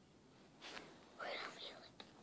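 A child whispering two short, breathy phrases, the first about half a second in and the second a little after one second.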